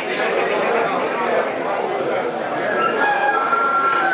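Poultry at an exhibition clucking, with a rooster crowing in a long held note near the end, over the chatter of a crowd.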